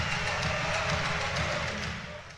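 Crowd noise in a volleyball arena: a steady din from the spectators during a rally.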